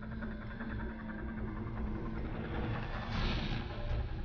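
Suspense background music: a low rumbling drone with a held tone, swelling brighter about three seconds in.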